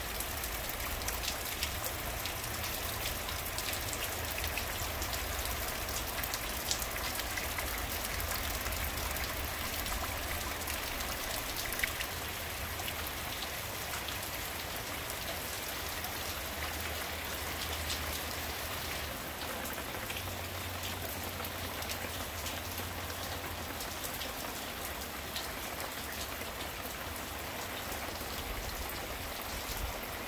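Steady hurricane rain falling on a yard and garden, with scattered drops ticking close by and a low rumble underneath.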